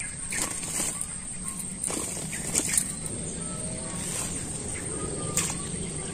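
A freshly caught tilapia flapping and thrashing as it is handled off the hook: a scattered run of sharp slaps and rustles, over a steady high insect whine.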